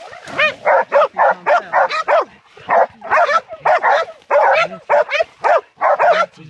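Hog-dog puppies barking and yelping rapidly at a hog held up in the brush, about three high-pitched barks a second: the puppies are baying the hog rather than catching it.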